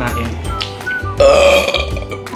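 A man burps loudly about a second in, one rough belch lasting under a second, over background music.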